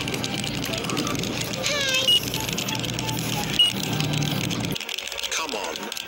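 Indistinct voices over a steady low hum, with two short high beeps in the middle; the hum cuts off near the end.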